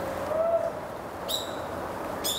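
A faint, drawn-out call that rises slightly and then holds, and about a second later a brief high chirp, over the steady hush of a forest.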